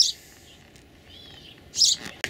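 A bird chirps a short, faint warbling phrase about a second in, over quiet outdoor background.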